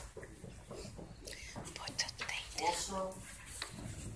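Quiet, indistinct speech and murmuring in a large room, with a few soft clicks and rustles, during a lull in the louder talk.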